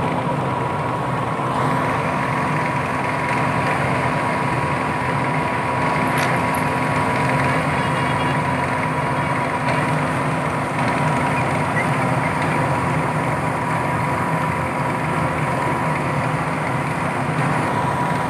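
A drum-mix hot bitumen plant running, with its dust-extraction exhaust fan working beside the mixing drum. It makes a steady, unchanging machine drone with a constant hum.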